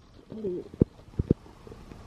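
A short low vocal hesitation sound, then three sharp clicks about a second in as a small plastic bag of metal screws is handled over a paper instruction booklet.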